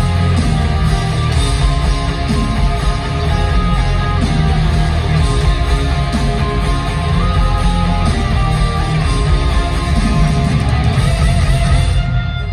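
Live rock band playing loud, with electric guitar to the fore, heard from the audience in an arena.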